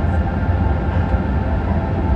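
Steady low rumble of a jet airliner's passenger cabin, with no distinct events.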